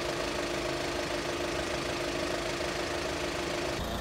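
Car engine idling steadily, with an even hum that does not change.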